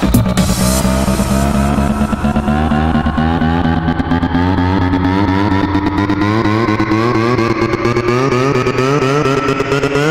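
Electro house track in a build-up: the drum hits drop out and a sustained synth line made of many stacked tones wavers as it slowly rises in pitch.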